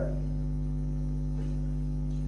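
Steady low electrical mains hum, an even drone with no change in pitch or level, with a faint tick about one and a half seconds in.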